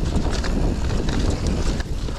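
Mountain bike descending a leaf-covered dirt trail: wind buffeting the microphone, with the tyres rolling and short knocks and rattles from the bike over the bumps.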